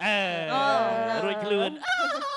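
A person imitating a rooster's crow into a microphone: one long call lasting almost two seconds, falling in pitch toward its end.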